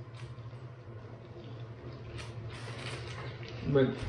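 Plastic sleeves and comic books rustling and crinkling as they are handled, loudest a little past the middle, over a steady low hum.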